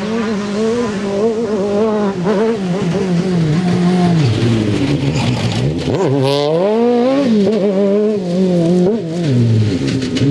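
Rally car engine revving hard through repeated gear changes, the pitch climbing and dropping again and again. About six seconds in it drops low, then climbs steeply as the car pulls away out of the corner, with a short hiss at the same time.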